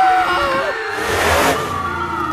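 Cartoon monster truck engine revving, with a swell of noise about a second in, as the truck leaps into the ring.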